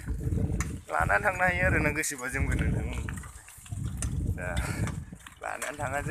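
Goats bleating: a long quavering bleat about a second in, and a shorter one near five seconds.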